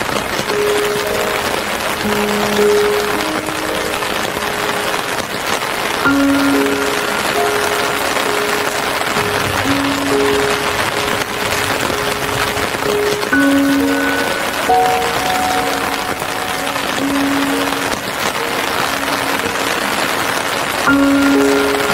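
Steady rain hiss under soft relaxation music, a slow melody of long held notes.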